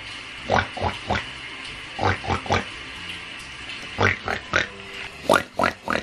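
A person imitating a pig's oinking: short nasal grunts in four quick sets of about three.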